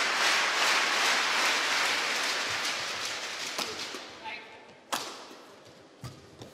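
Arena crowd applause and noise fading away steadily over several seconds. About five seconds in, a single sharp crack comes through, typical of a racket striking a shuttlecock on the serve.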